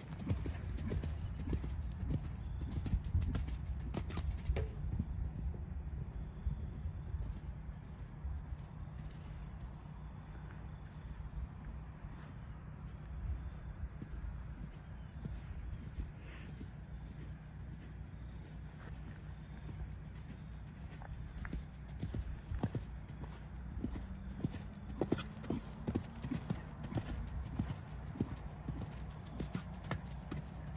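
Hoofbeats of a Canadian Sport Horse gelding cantering and jumping on arena sand. They are loudest as the horse passes close in the first few seconds and again near the end, and fainter in between while it is far off.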